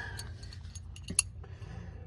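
Faint low background rumble with a single sharp click a little over a second in.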